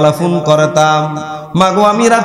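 A man's voice chanting a Bengali Islamic sermon in a sung, melodic style through a microphone, holding long, steady notes. The line breaks off briefly for a breath about one and a half seconds in and resumes on a higher note.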